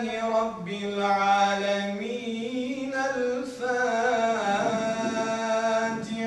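A man's solo voice chanting unaccompanied through a microphone, holding long, ornamented notes, with a brief breath about three and a half seconds in.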